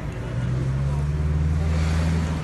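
A motor vehicle's engine running close by: a low, steady drone that comes in about half a second in and holds level.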